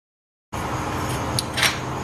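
Half a second of dead silence at an edit, then workshop room tone with a steady low hum. A light metallic click and a short scrape follow about a second and a half in: hand tools handled against a Wilwood four-piston brake caliper held in a bench vise.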